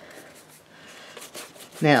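Faint, soft bristle strokes of a stiff brush working acrylic paint on a palette, a light scratching that grows denser toward the end.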